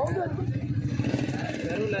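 A small engine running steadily at idle, with faint voices in the background.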